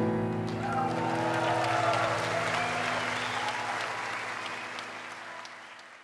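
Live audience applauding over the last notes of a jazz band's closing chord ringing out, with a few voices calling out in the crowd; the whole sound fades out steadily.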